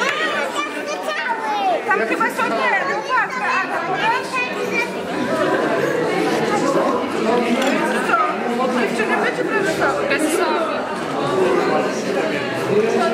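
Many people chattering at once in a large hall, overlapping voices with no single speaker standing out.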